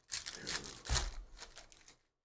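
Foil trading-card pack wrapper being torn open and crinkled by hand, a run of crackling rips that is loudest about a second in.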